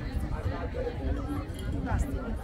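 Indistinct chatter of several people talking, with no words clear, over a steady low rumble.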